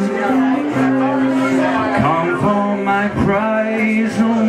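A man singing with acoustic guitar accompaniment, holding long notes between shorter wavering phrases.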